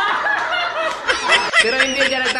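Several people laughing together, with a woman's laughter among them, and some talk mixed in.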